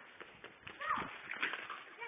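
A child's brief call about a second in, with a few faint knocks around it.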